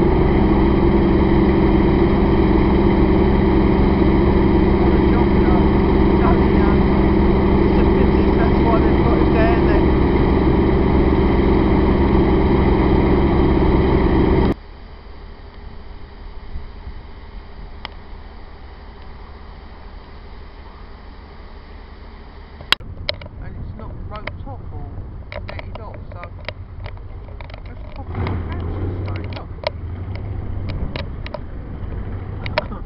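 Railway diesel locomotive idling steadily close by. About halfway through, the sound cuts abruptly to a much quieter background, with a sharp click and then scattered ticks near the end.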